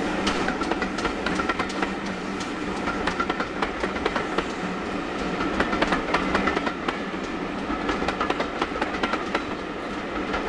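Steam-hauled passenger train of coaches running past and drawing away, its wheels clattering over the rail joints in frequent sharp clicks over a steady rumble.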